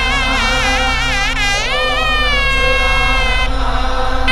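Nadaswaram, a South Indian double-reed horn, playing a melody with wavering, ornamented notes and a long held note in the middle, over a steady low backing. The reed line breaks off briefly near the end.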